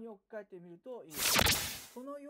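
A whoosh transition sound effect marking a slide change: one sharp swish of noise about a second in, lasting under a second, over quiet speech.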